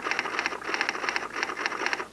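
A short edited-in sound effect: a crackling, rattling noise that swells about four times and then cuts off suddenly.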